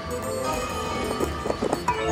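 Slot machine bonus-round music playing, with a quick run of clicks in the second half as the reels stop one after another.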